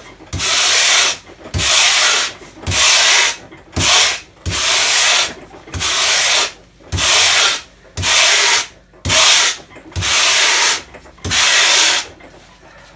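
Wire brush raked hard along a board of pink insulation foam, digging into it to carve a weathered wood grain: about ten long scraping strokes, roughly one a second, each starting with a short low knock as the brush lands.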